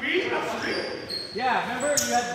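Indistinct voices of players talking on a gymnasium basketball court, with short high squeaks and a sharp knock just before the end.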